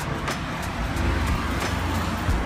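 Street ambience: a steady low rumble of road traffic.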